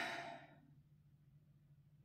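A woman's short breathy sigh, fading within about half a second, followed by near silence with a faint steady low hum.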